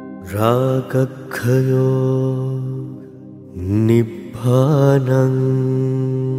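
A man's voice chanting in two long, held phrases over soft music, each phrase opening with a rising slide in pitch.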